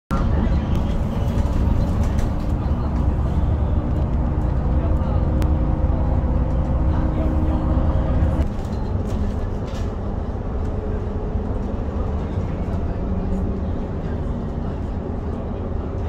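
Bus running along the road, heard inside the passenger cabin: a steady low rumble of engine and road noise with an engine drone over it. About halfway through, the drone changes and the whole sound gets a little quieter.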